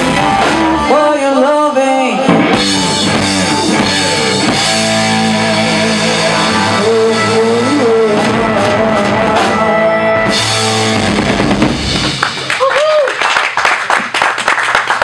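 A hard rock band playing live, with drum kit, bass guitar, electric guitar and a singer's gliding vocal line. The band sound breaks off about three-quarters of the way through, and an uneven stretch with a voice follows.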